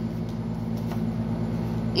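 Steady low mechanical hum made of several held tones that do not change in pitch, like a machine or engine running at a constant speed.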